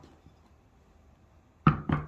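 After a quiet stretch, two sharp knocks about a quarter second apart near the end, as a terracotta plant pot is shifted and set down on a wooden table.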